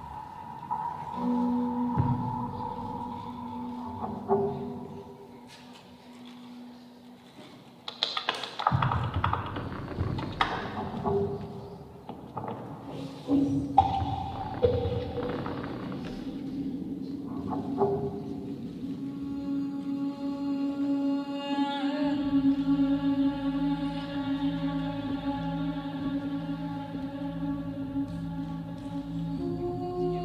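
Slow, ambient performance music with long held tones. A cluster of sharp hits comes in the middle, and from about two-thirds of the way through a steady low drone sits under several layered held notes.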